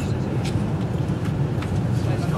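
Steady low hum and rumble inside the passenger carriage of a Class 390 Pendolino electric train, with a few faint clicks.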